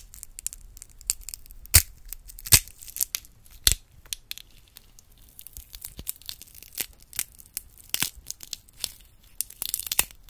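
Small brittle pieces being snapped and crumbled between fingertips close to a microphone. A few sharp cracks come in the first four seconds, then quicker, finer crackling.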